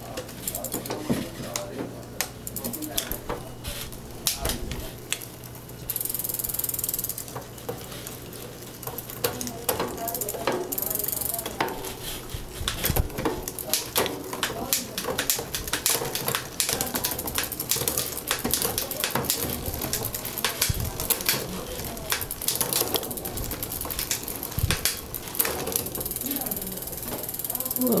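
Bicycle drivetrain turned by hand on a stand: the chain runs over the 11-speed cassette with rapid clicking and rattling as the SRAM rear derailleur shifts across the cogs, a test of shifting on a freshly fitted cable whose tension turns out a little loose.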